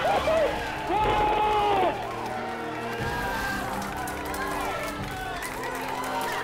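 A group of people cheering with loud, drawn-out shouts over background music; the shouting stops about two seconds in, leaving the music playing on its own.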